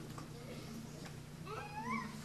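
A faint, short, high cry rising in pitch, about one and a half seconds in, over quiet room tone.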